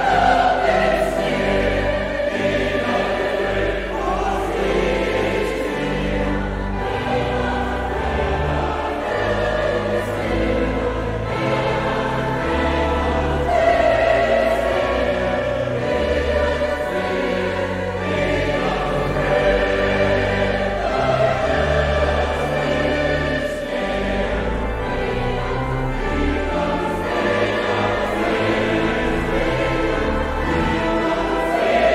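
A large choir singing a choral piece in full voice, with sustained low bass notes underneath that change every second or two.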